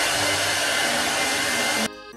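Budget handheld hair dryer blowing, a loud steady rush of air that stops abruptly near the end.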